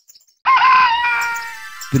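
Rooster crowing once: a single long call that wavers at its start, then holds and tails off.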